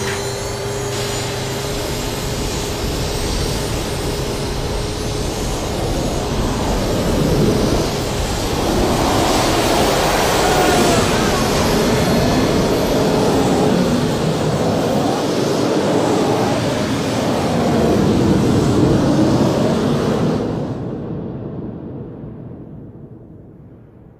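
Twin MiG-21 turbojet engines of the Big Wind fire-fighting tank running at full throttle: a loud, steady roar with a faint steady whine in the first few seconds. The roar swells in the middle and fades away over the last few seconds.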